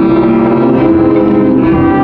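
High school marching band playing its field show: loud, sustained chords that shift to new notes a few times.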